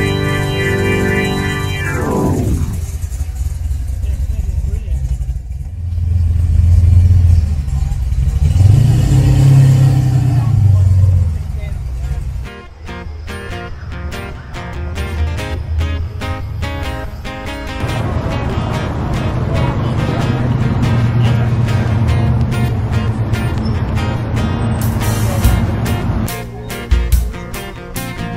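Car engines running in the street, one rising and falling in a short rev, over a background of people talking. Music stops abruptly about two seconds in.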